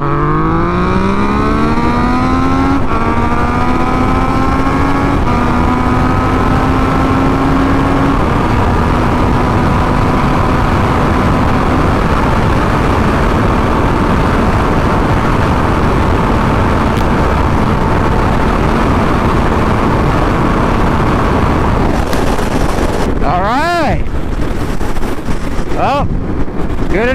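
2017 Yamaha FZ-09's 847 cc inline three-cylinder engine accelerating hard through the gears. The pitch climbs and drops back at each upshift, four times in the first twelve seconds, then holds steady at highway speed under heavy wind noise on the microphone. Near the end there are two brief swoops in pitch.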